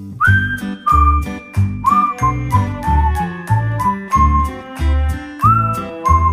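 Background music: a bouncy, whistled melody over a steady beat with repeating low bass notes.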